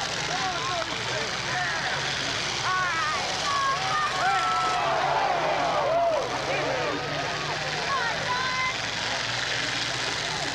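Demolition derby car engines running in the arena, under a crowd of many voices shouting and yelling, loudest in the middle.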